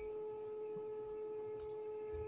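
A steady, faint single-pitched tone with fainter overtones above it, unchanging throughout, and a brief faint tick near the end.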